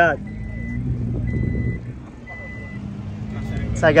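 Repeating electronic beep, a half-second tone about once a second, over the low rumble of idling car engines.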